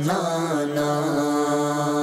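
A man's voice singing a naat, an Urdu devotional poem in praise of the Prophet Muhammad, holding one long note after a short glide at the start.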